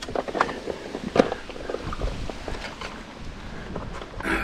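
Wind rumbling on the microphone over a kayak on open water, with scattered light clicks and knocks from handling the fishing rod and reel.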